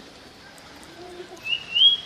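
A single high, whistle-like animal call starting about one and a half seconds in, stepping up in pitch and lasting about half a second.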